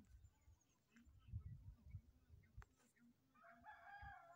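A rooster crowing faintly near the end: one held, even-pitched call, over faint low rumbles on the microphone.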